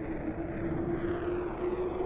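Sound-effect rumble of a spacecraft engine: a steady low drone with a constant hum running through it, slowly building.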